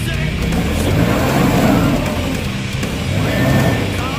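Polaris RZR side-by-side's engine revving up and down as it crawls over rocks, loudest through the middle, with rock music playing underneath.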